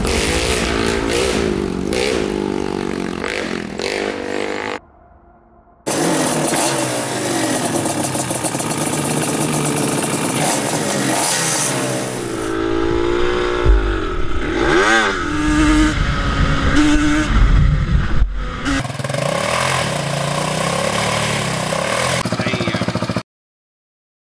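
Sport quad engines revving up and down through the throttle as the ATVs ride and are blipped on a dirt trail. There is a brief break about five seconds in, and the sound cuts off suddenly just before the end.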